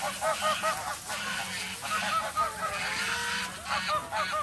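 A flock of domestic geese honking: many short calls in quick runs, several birds at once, with brief lulls between the runs.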